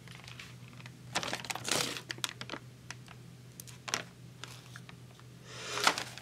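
Irregular light clicks and plastic crinkling as a foil snack bag and small objects are handled, in bursts about a second in and again near four seconds, over a steady low hum.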